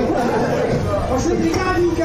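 Several people talking and calling out over one another in a room.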